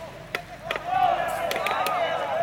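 Several sharp thuds of a football being kicked and headed in quick succession, then players shouting loudly on the pitch from about a second in, the shouts overlapping and wavering.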